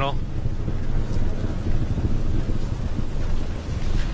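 Steady low rumble of the Falcon 9 first stage's nine Merlin engines in full-thrust ascent, as carried on the launch broadcast audio.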